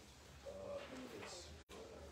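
A man's faint murmured hesitation sounds, short low hums at the podium microphone, with the sound cutting out for an instant near the end.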